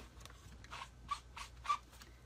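A quick series of about six soft, light taps, roughly three a second, from a stamp and ink pad being handled on a craft table.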